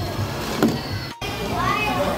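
Children playing and calling out, with a sharp clack about half a second in and a brief dropout just after a second.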